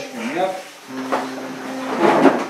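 Acoustic guitar played softly under a man's voice opening a prayer, a single note held for about a second. Near the end, a rush of rustling as people get up from plastic chairs.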